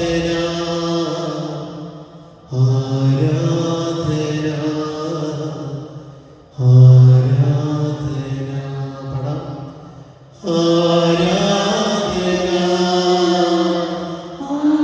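A man's voice chanting a slow devotional refrain through a microphone, in long held phrases that each fade off before the next begins about every four seconds.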